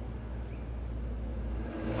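Steady low hum and rumble of background noise, with no distinct event.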